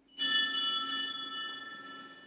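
Altar bell struck once at the consecration of the chalice, its high ringing tones fading away over about two seconds.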